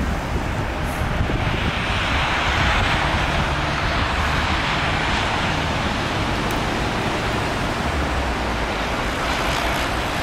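Steady noise of city traffic, swelling for a few seconds from about a second and a half in, over a low rumble.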